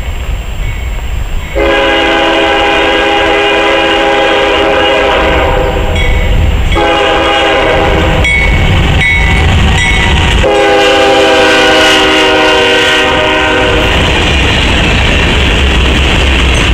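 A locomotive's five-chime Nathan K5HL air horn sounding a series of blasts: a long one, two shorter ones, then a final long blast, matching a grade-crossing warning, over the low rumble of the approaching diesel locomotives. Near the end the horn stops and the locomotives and freight cars pass with steady wheel and rail noise.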